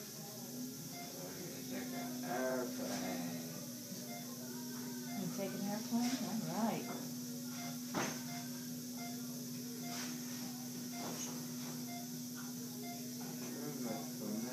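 A steady low hum, with indistinct voices rising and falling over it and a few short clicks.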